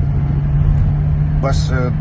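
Steady low rumble and hum of a car heard from inside its cabin, with a man's voice briefly near the end.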